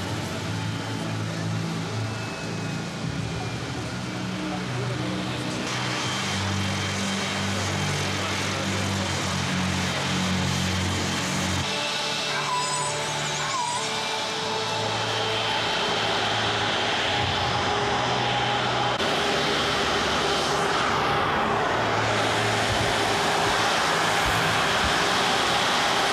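Background music with a stepped bass line, over the rushing noise of the Airbus BelugaXL's Rolls-Royce Trent 700 turbofan jet engines, which comes in about five seconds in and grows louder toward the end.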